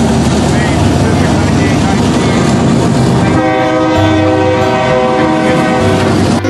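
Diesel freight locomotives passing close with a loud, even rumble, then, about three and a half seconds in, a train horn sounding a steady chord of several notes that cuts in abruptly.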